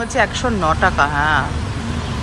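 A person talking for about a second and a half over a steady low hum, which then carries on alone.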